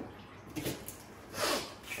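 A kitchen knife slicing onions on a plastic cutting board, with a few faint taps, and a short breathy noise about one and a half seconds in.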